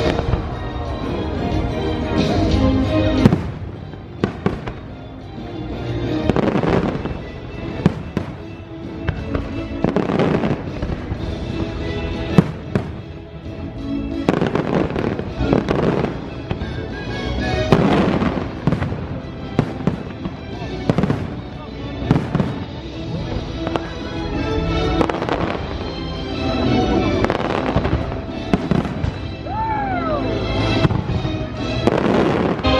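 A fireworks show: shells launching and bursting in a fast, irregular run of bangs and crackles, the sharpest bang about twelve seconds in. The show's music soundtrack plays through loudspeakers underneath.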